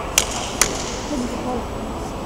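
Two sharp clicks of a table tennis ball in play, less than half a second apart, from the ball meeting bat and table.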